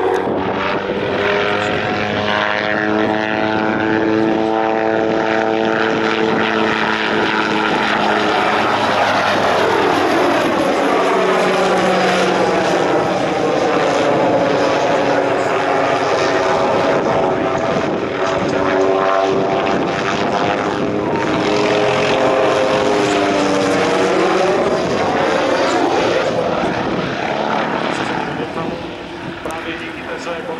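MD 500 light helicopter flying display manoeuvres: its turboshaft engine and rotor blades run loud and steady, the pitch of their hum sliding down and back up as it swings toward and away. The sound eases off briefly near the end.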